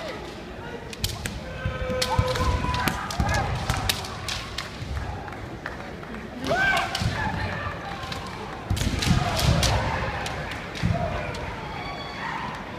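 Kendo fighting in a large hall: sharp clacks of bamboo shinai, thuds of stamping feet on the wooden floor, and short shouted kiai, the loudest a rising shout about six and a half seconds in.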